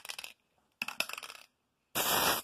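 Aerosol can of hydro-dip activator being shaken, its mixing ball rattling in two short bursts of rapid metallic clicks.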